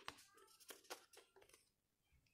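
Near silence with a few faint, short rustles and light clicks of stiff double-sided paper petals being handled and arranged, mostly in the first second and a half.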